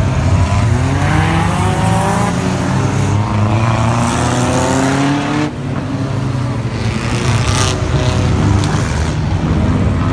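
A pack of small stock cars racing on a dirt oval, several engines running together. Their pitch climbs steadily for a few seconds as they accelerate, drops off briefly about halfway through, then picks up again.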